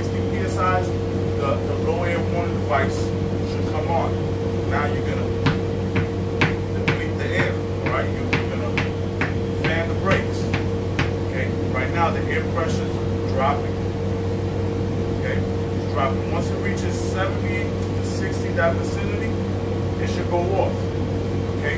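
A man talking over a steady machine hum, with a low drone and a higher steady tone underneath his voice.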